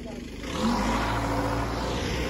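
A vehicle engine running, coming up about half a second in and then holding steady with a low hum.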